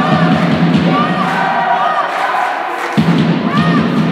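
Volleyball being played in a sports hall: thuds of the ball and players on court, with short squeaks of shoes on the court floor, over a dense low din from the hall that cuts in sharply again about three seconds in.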